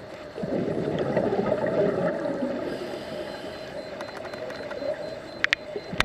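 Underwater sound of a scuba diver exhaling through the regulator: a burst of bubbles gurgling about half a second in that lasts about two seconds, over a steady hum. A few sharp clicks near the end, two close together.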